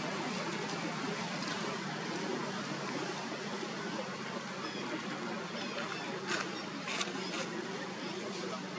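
Steady outdoor background hiss with a few short sharp crackles between about six and seven and a half seconds in.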